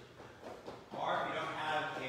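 Faint, indistinct voice starting about a second in, after a quiet first second.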